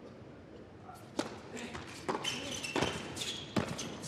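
Tennis ball struck by rackets in a doubles point on an indoor hard court: the serve about a second in, then three or so quick sharp hits and bounces a little under a second apart as the rally goes on.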